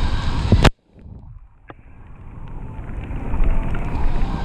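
Wind on the microphone and tyre and trail noise from a mountain bike riding fast down a wet forest singletrack. The noise cuts off suddenly with a click under a second in, then builds back up gradually.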